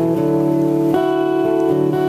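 Acoustic guitar strumming sustained chords, changing chord about once a second.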